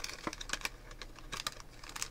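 A clear plastic clip package being handled and opened by fingers: a run of small, sharp plastic clicks and crackles.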